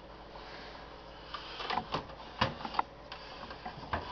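Scattered clicks and knocks of hands handling the open CB radio and its wiring on the bench, over a faint low hum. The first stretch is quiet, and about half a dozen sharp knocks follow.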